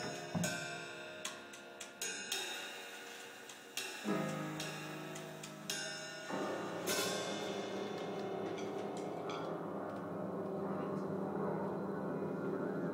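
Live free-improvised jazz from a piano, drums and trombone trio. The first seconds are separate struck, ringing chords and hits. About four seconds in, a long low note enters. From about six seconds the band thickens into a dense, continuous texture with a cymbal crash.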